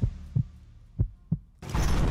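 Heartbeat sound effect: two low double thumps, a suspense sting. About one and a half seconds in, a loud synthesized music hit comes in.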